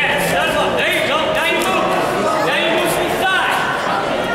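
Ringside spectators at a boxing bout: several overlapping voices calling out over general crowd chatter.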